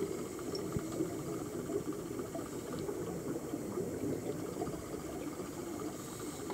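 Underwater sound of scuba divers' exhaled air bubbling steadily from their regulators, with scattered small clicks and crackles.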